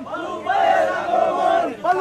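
A crowd of voices chanting together in unison, in long, drawn-out notes that rise and fall, with a short break near the end.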